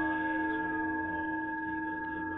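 Ambient meditation music in which a struck bell-like tone, hit just before, rings on and slowly fades.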